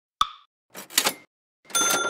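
Logo-animation sound effects: a short pop, then two quick whooshes, then a bright ding about a second and a half in that keeps ringing.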